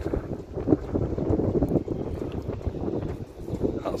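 Wind buffeting the camera's microphone: an uneven low rumble that flutters in strength.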